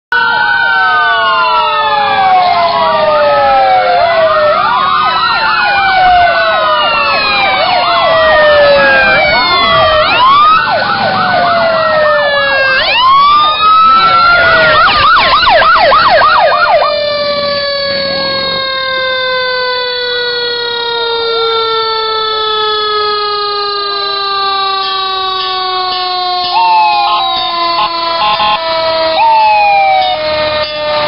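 Several fire engine sirens sound at once, overlapping wails rising and falling, with a faster yelp about halfway through. After that one siren winds down in a long, slowly falling tone.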